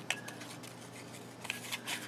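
Cardstock tag being slid into a plastic paper punch and lined up. A few light clicks and paper scraping against plastic, with a small cluster of clicks near the end.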